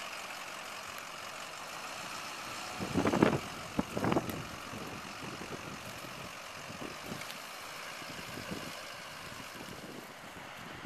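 Golf cart running steadily as it drives over sandy ground, with two short louder bursts about three and four seconds in.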